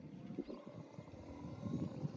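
Faint outdoor background with soft, irregular low buffeting of wind on the microphone; no distinct event.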